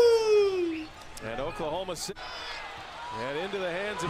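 A drawn-out excited shout that falls steadily in pitch and fades out about a second in, followed by quieter speech.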